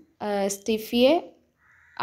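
A woman's narrating voice for about the first second, then a short pause.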